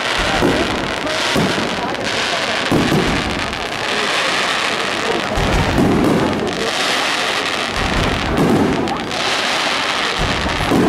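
Aerial firework shells bursting overhead in quick succession: deep booms every one to three seconds over a continuous hiss of burning stars.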